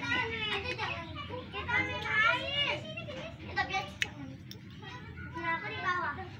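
Children's voices: kids talking and calling out, high-pitched and lively, with one sharp click about four seconds in.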